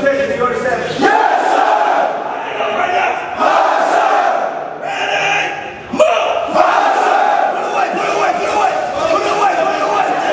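Many recruits' voices shouting together in loud, drawn-out unison sound-offs, with a short lull about five seconds in before the shouting picks up again.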